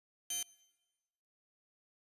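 A single short ding about a third of a second in, with a brief ringing tail.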